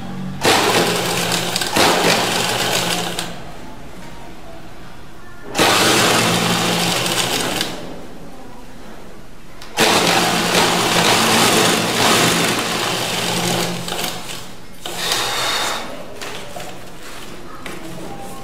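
Sewing machine stitching through layered skirt fabric and net in separate runs: three long runs of two to five seconds each, then a short burst near the end, with quieter pauses between them.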